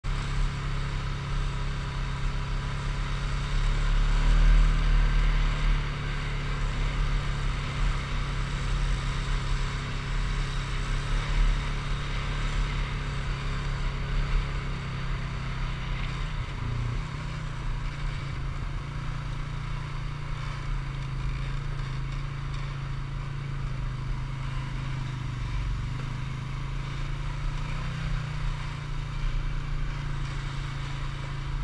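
ATV engine running steadily while riding a dirt trail. It gets louder for a couple of seconds about four seconds in.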